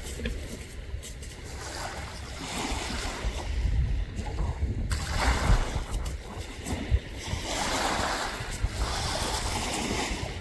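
Wind buffeting the microphone over the wash of small waves on a beach, the hiss swelling and fading every few seconds.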